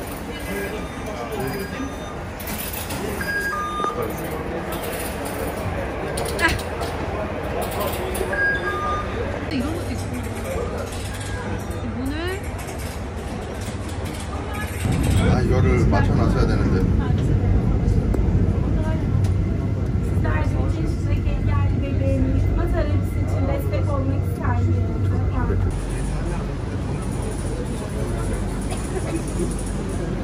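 Busy metro station ambience of crowd chatter and footsteps, with a couple of short electronic beeps. About halfway through, a loud low rumble of a metro train takes over and continues under the chatter.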